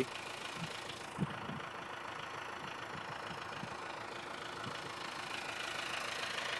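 John Deere tractor's diesel engine running steadily as it pulls a field cultivator across worked ground, growing louder as it approaches near the end. A short low thump about a second in.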